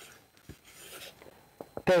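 Soft rustling and scraping of paper as a book's pages are handled at a lectern, with a few faint ticks; a man's voice starts speaking near the end.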